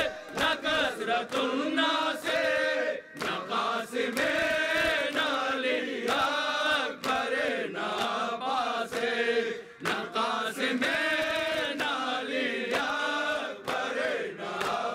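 A group of men chanting an Urdu noha (mourning lament) in unison with the lead reciter, with sharp chest-slaps of matam cutting through the chant.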